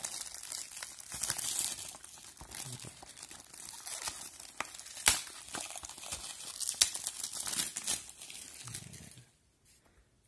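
Thin plastic shrink-wrap crinkling and tearing as it is peeled off a Blu-ray case, with sharp crackles. It stops about nine seconds in.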